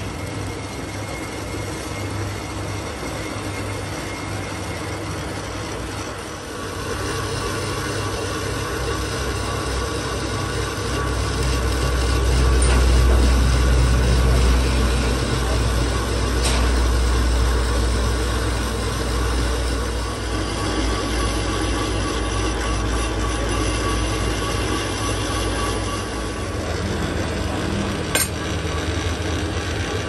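Metal lathe running, its chuck spinning an iron gearbox pinion workpiece as it is machined: a steady mechanical drone with a low hum. It grows louder after several seconds and is loudest for a stretch in the middle. A single sharp click comes near the end.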